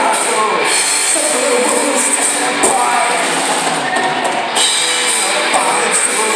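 Live rock band playing electric guitars and drums, with cymbals keeping a steady beat, heard with little bass.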